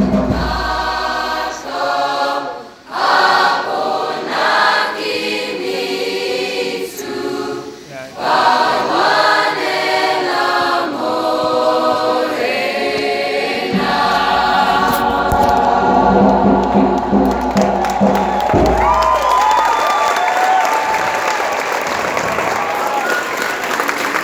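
Mixed school choir singing in parts, with short breaks between phrases. About halfway through the singing stops and the audience applauds, with a few voices calling out.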